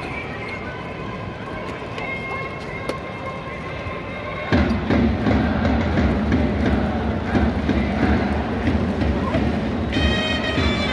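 Baseball stadium crowd murmuring. About halfway through, the outfield cheering section suddenly starts up: drums beating in a steady rhythm and fans chanting together, much louder than before.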